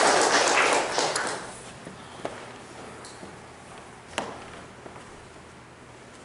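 Congregation's applause tailing off and dying away in the first second or so, then a quiet room with a couple of isolated sharp taps.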